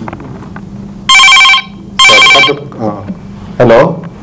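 A telephone ringing twice, two short electronic rings of steady tones about a second apart, answered with a spoken 'hello' near the end as a phone-in call connects.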